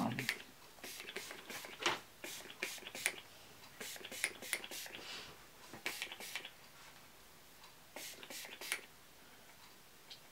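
Pump spray bottle of leave-in conditioner spritzing onto hair: a series of short hissing sprays, in quick groups of two to four with pauses between.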